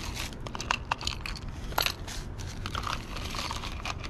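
A small plastic bag crinkling as it is handled, with irregular light clicks as costume jewelry is picked through in a plastic compartment box.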